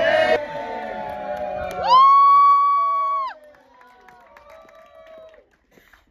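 Live audience cheering and shouting, with one loud, long, high-pitched whoop held for over a second about two seconds in, then scattered calls fading out.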